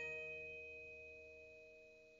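A single note on a struck metal percussion instrument, bell-like, rings on and fades slowly after being hit.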